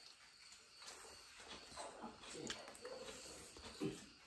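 Faint close-up eating sounds: chewing, lip smacks and the hand squishing rice and duck curry on the plate. A short pitched sound comes about three seconds in.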